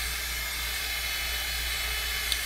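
Hot Tools hot-air blow brush running: a steady rush of air over a low, even motor hum as it is worked through a synthetic wig.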